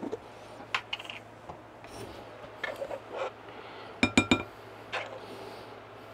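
Metal knife scooping mayonnaise out of a jar and knocking it off against a glass mixing bowl: scattered soft scrapes and clicks, then three quick ringing clinks about four seconds in.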